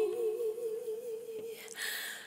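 A woman's voice humming one long held note with a wavering vibrato, over a soft lower sustained note, as part of a slow ballad.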